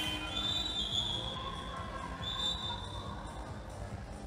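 Game sound of a 3x3 basketball game in a sports hall: a basketball bouncing on the wooden floor. Two high, shrill tones come through, one in the first second and a half and a shorter one near the end of the third second.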